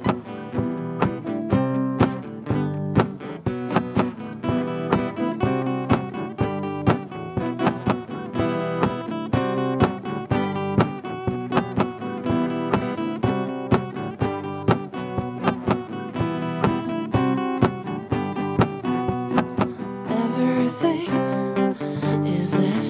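Two acoustic guitars playing an instrumental passage together, a steady run of picked notes over strummed chords.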